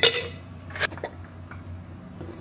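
Kitchenware clinking on a countertop: a sharp clink with a short ring at the start, then two lighter knocks just under a second in.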